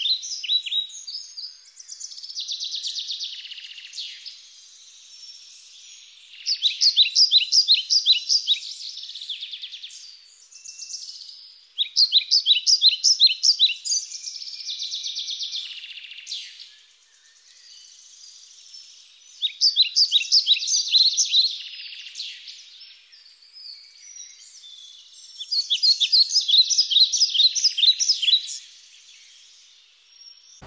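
A songbird singing, repeating a loud, rapid trilled phrase of about two seconds roughly every six seconds, with softer chirping between the phrases.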